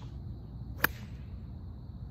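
A single crisp click of a gap wedge striking a golf ball, a little under a second in, over a low steady background rumble.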